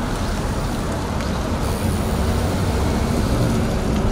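Road traffic: cars driving past on a city street, a steady noise of engines and tyres.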